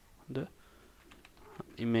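Computer keyboard typing: a few faint keystrokes as a short folder name is typed.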